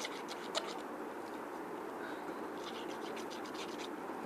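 A scratch-off card's coating being scratched away in quick short strokes, in two spells: one just after the start and another from near the middle to about three seconds in.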